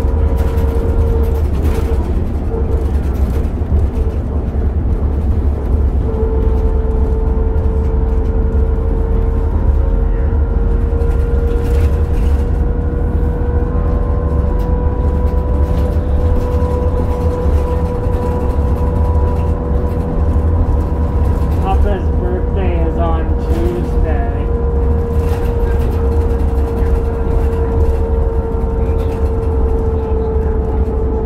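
Inside a 2002 New Flyer D40LF diesel transit bus under way: a steady low rumble of engine and road with a constant whine over it. A brief cluster of small squeaks comes about three-quarters of the way through.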